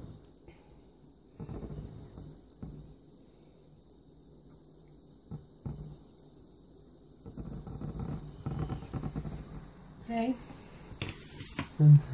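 Quiet kitchen handling sounds: a few soft knocks and faint murmuring voices, with a short rustle near the end.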